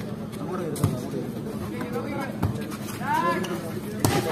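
Indistinct voices of spectators and players around a volleyball court, with a few sharp knocks of the ball being struck, the clearest about a second in.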